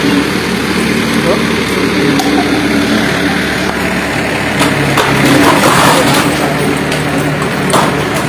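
Diesel engine of a JCB 3CX backhoe loader running steadily while its arm pulls at a shop's awning sign, with a few sharp knocks and scrapes, the clearest near the end as the sign gives way.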